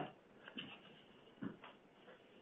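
Near silence on a telephone conference line, broken by a few faint, short sounds about half a second in and again around a second and a half in.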